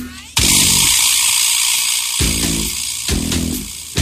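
Radio jingle music: plucked bass-guitar notes recurring about once a second, with a loud hissing sound effect that starts about half a second in and lasts about a second and a half.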